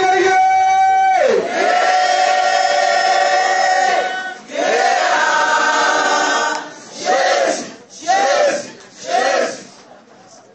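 A group of voices chanting in long held notes, three drawn-out calls followed by three short ones about a second apart.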